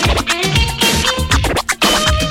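Turntable scratching: a vinyl record pushed back and forth by hand, making quick rising and falling scratch sounds over a playing track with a steady beat. The scratching cuts out briefly near the end.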